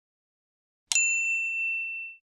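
Notification-bell 'ding' sound effect from a subscribe-button animation: one bright strike just under a second in, ringing on as a clear high tone and fading away.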